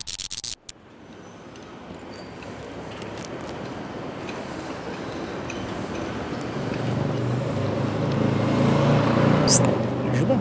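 Street traffic noise that grows steadily louder, with a motor vehicle's low engine hum coming up over the last few seconds as it passes close. It opens with a brief crackly burst, the tail of a title-card sound effect.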